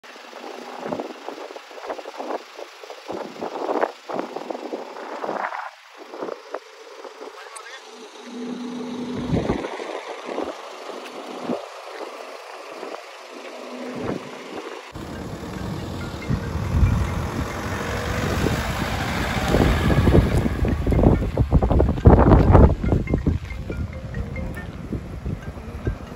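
People's voices in short, broken snatches; about halfway through the sound changes abruptly to a louder recording where voices sit over a heavy, steady low rumble that grows louder near the end.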